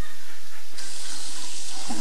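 A bathroom tap turned on and running water into a sink, starting suddenly about three-quarters of a second in as a steady hiss.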